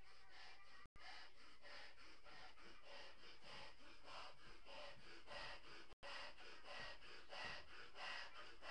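A person blowing up a large latex balloon by mouth: quick rhythmic breaths, about two a second, drawn in and pushed into the balloon. The sound cuts out for an instant twice.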